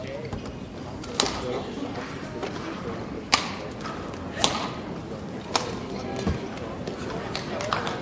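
Badminton rally: four sharp racket-on-shuttlecock hits, the last three about a second apart, over background voices in a large hall.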